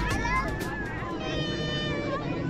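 Children's high-pitched calls and squeals, with one long held high call in the second half.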